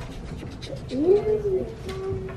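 Indistinct voices of young children at their desks, with no clear words. About a second in, one child's voice rises in pitch and holds a drawn-out sound for under a second.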